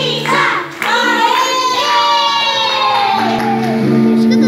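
Children singing a song over musical accompaniment, with long held notes.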